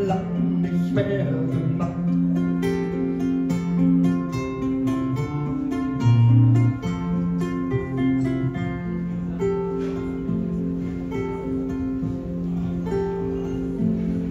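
Two acoustic guitars playing an instrumental passage of a live song, with rhythmic strummed chords and held bass notes.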